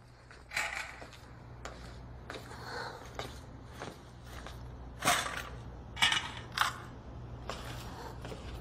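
Handling noises from a tray of first-aid instruments being set down and sorted: a run of short clicks and rustles, with three sharper clinks about five to seven seconds in, over a low steady hum.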